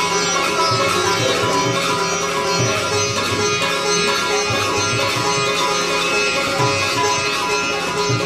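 Sitar played live, its plucked melody over tabla accompaniment, with repeated low strokes from the bass drum.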